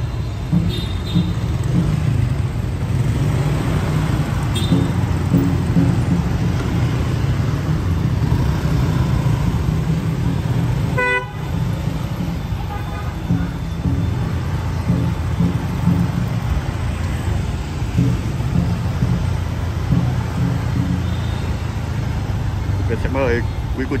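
Street traffic of motorbikes and cars running steadily along a narrow city street, with one short vehicle horn toot about eleven seconds in.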